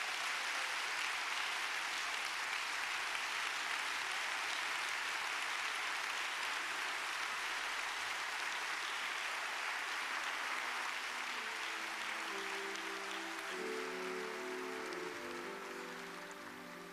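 A large congregation applauding steadily. Sustained keyboard chords come in about ten seconds in and grow louder as the clapping thins toward the end.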